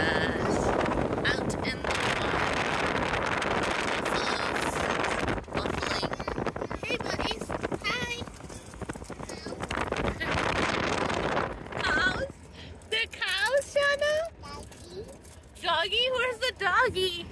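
Car tyres rolling over a gravel road, with a steady rough rumble of road noise for about twelve seconds. Then the road noise drops away and a young child's high voice is heard babbling and vocalising.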